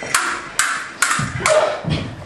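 Steel stage-combat swords clashing blade on blade in a choreographed fight: four sharp, ringing strikes about half a second apart.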